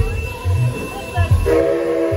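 Narrow-gauge steam locomotive whistle sounding a steady chord of several notes. It starts suddenly about one and a half seconds in, over a low rhythmic thumping.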